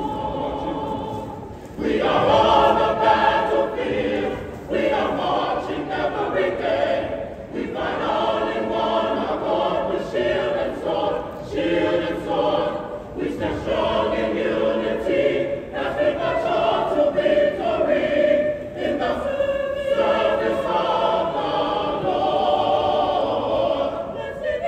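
Mixed choir of young men and women singing together in sustained phrases with short breaks between them, coming in louder about two seconds in, with the echo of a school gymnasium.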